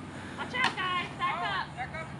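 Young children's high-pitched voices chattering and calling out over outdoor background noise, with a single sharp knock about two thirds of a second in.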